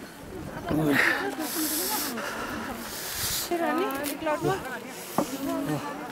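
Several people talking at once in a crowd, with bursts of hissing noise about a second in and again in the middle, and a sharp click near the end.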